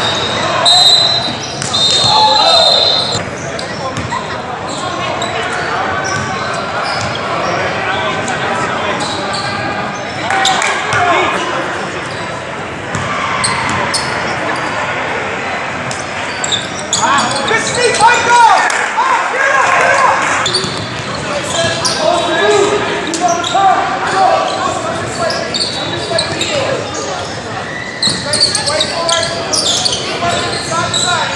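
Basketball game in a large, echoing gym: the ball dribbling on the hardwood court amid spectators' and players' voices. A brief high tone sounds near the start, and the voices swell into shouting about eighteen seconds in, as a player goes up for a layup.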